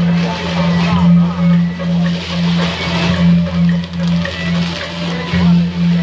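Beiguan procession music in the street: a low pulsing tone beating about three times a second, with sharp percussion knocks about a second in and again about five seconds in, over crowd voices.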